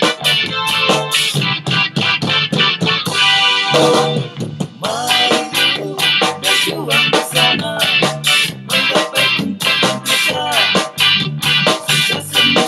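A song with guitar accompaniment playing at a steady beat; a man's singing voice comes in about four seconds in.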